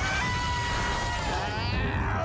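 Cartoon action soundtrack: a steady low rumble under a held high tone, which gives way to warbling, falling glides near the end.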